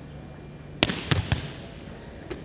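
A volleyball struck with an overhead arm swing and rebounding off the wall: three sharp smacks within about half a second, about a second in, echoing in a large gym.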